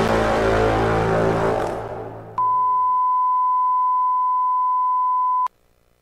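Outro music fading out over the first two seconds or so, then a steady, high-pitched pure test tone that holds for about three seconds and cuts off suddenly at the end of the broadcast.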